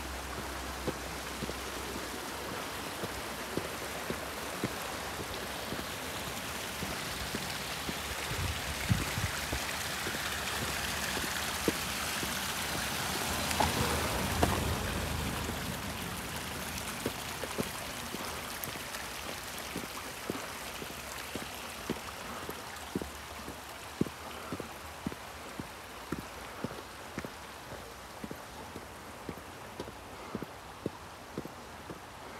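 Rushing water of a mountain stream, growing louder toward the middle and then fading, with regular footsteps on a paved road, about one a second.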